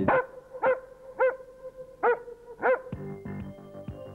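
A dog barks five times, short sharp barks spaced about half a second to a second apart, over a held music note. Near the end the barking stops and a music track of steady notes carries on.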